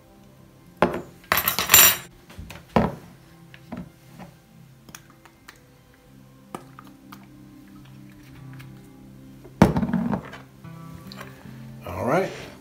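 A hand pepper grinder grinding in a short rasping burst, then set down on a countertop with a knock, followed by small taps as a hot sauce bottle is shaken. Near the end a knife and fork clatter against a ceramic plate. Quiet background music plays underneath.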